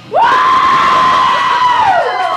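A loud, high whoop from someone in the club audience as the song ends: the voice swoops up, holds one high note for about a second and a half, then slides down near the end, over crowd cheering.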